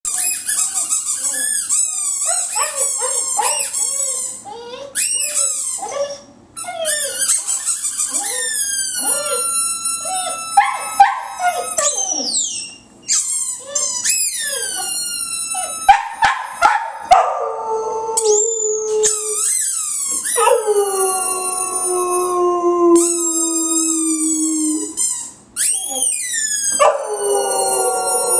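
An American bulldog howling at a really loud squeaky ball that is squeezed again and again. It begins as quick, high, broken squeaks and yelps, and from the middle on turns into long, slowly falling howls.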